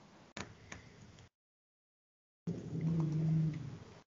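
A person humming a steady, low "mmm" for about a second near the end, after a stretch of near silence broken by a few faint clicks.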